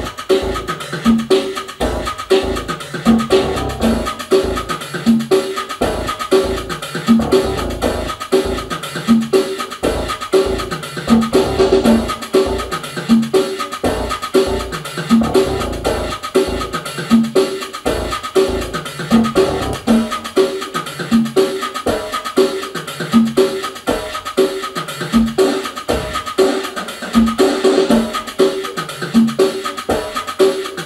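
Electronic drum-machine Latin groove: a steady, looping beat of drums and percussion with synth parts, played live from grooveboxes.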